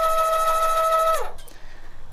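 Electric tongue jack on a travel trailer's A-frame running: a steady motor whine that stops a little over a second in, its pitch sagging as it winds down. The jack is adjusting the trailer's front height to level it.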